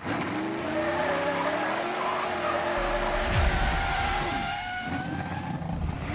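Produced race-car sound effect: an engine revving, rising, holding and then falling in pitch, over a screeching tyre skid. A deep boom comes about three seconds in, and a shorter rev rises and falls near the end.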